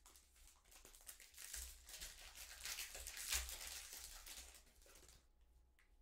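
Foil trading-card pack wrapper being torn open and crinkled by hand, a dense crackling that fades out near the end.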